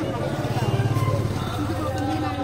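A motor vehicle's engine running close by with a low, fast-pulsing rumble that swells about half a second in and eases off by the end, as if passing, with people's voices around it.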